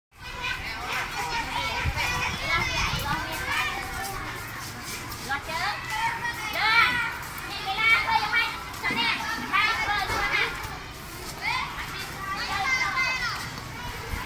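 A large group of young children's high voices, many talking and calling out at once in overlapping chatter.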